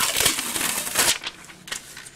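Crackly, sticky peeling noise lasting about a second as a cling-backed rubber stamp is handled against an acrylic mounting block coated with tack-and-peel adhesive. Quieter handling noises follow.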